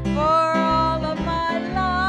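A woman singing a gospel song solo, her held notes wavering with vibrato, over acoustic guitar accompaniment.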